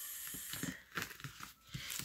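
Paper and a sticker strip rustling under the hands on planner pages: a steady, hissy peel of the sticker over roughly the first half-second, then a few faint crinkles and light taps.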